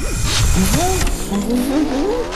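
A cartoon creature's wordless vocal sounds, a voice swooping up and down in pitch, starting about half a second in, over a low rumble.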